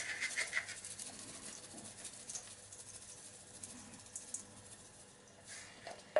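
Garlic salt being shaken from a shaker onto raw meat in a steel bowl: a faint rattle and patter of granules, busiest in the first second or so and again near the end.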